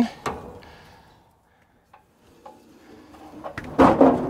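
Steel sliding gate on an Arrowquip cattle chute being opened: a short metal scrape about half a second in, a few light clicks, and a sharp clank near the end.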